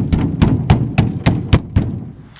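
A brush dabbing resin into fiberglass cloth laid on a fiberglass canoe hull, making a regular tapping about three to four times a second. The taps stop shortly before the end.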